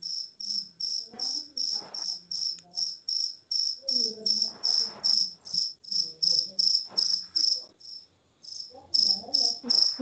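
Insect chirping: a high-pitched chirp repeated steadily about four times a second, with a brief pause about eight seconds in.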